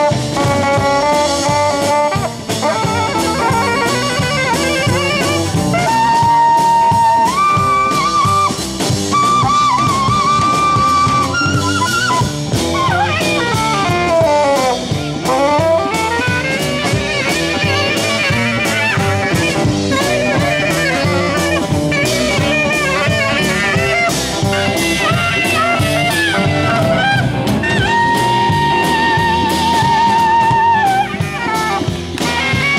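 Live rock and roll band: a saxophone solo of held notes and fast swooping runs, with a long falling-then-rising run midway, over electric guitar and drums.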